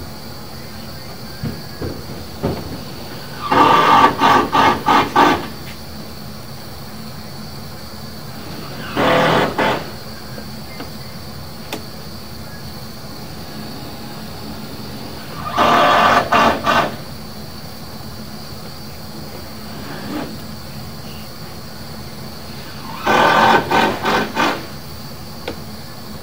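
Sewer inspection camera's push cable being pulled back out of a cast iron drain line in four short pulls. Each pull is a quick burst of rattling clicks, heard over a steady hum with a faint high whine.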